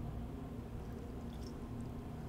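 Steady low background hum with a faint constant tone and no distinct events.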